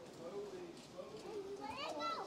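Faint background chatter of other people, children's voices among them, with a higher voice rising near the end.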